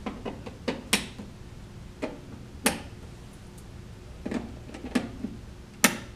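Sharp plastic clicks and knocks of small network cable identifiers being handled and plugged into RJ45 wall jacks: about eight separate clicks at uneven intervals, the loudest near the end.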